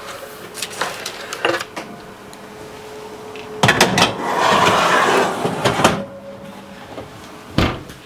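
A metal baking tray loaded with glass jars is slid onto an oven rack: scraping and clattering from about three and a half to six seconds in, after a few light clicks, then a single knock near the end.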